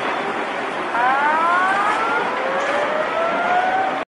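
A siren wailing, its tone rising slowly as it winds up about a second in, with a second, lower rising tone near the end, over a steady rushing noise.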